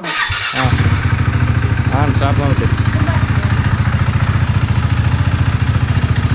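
A two-wheeler's engine starts about half a second in and then idles with a steady, evenly pulsing beat.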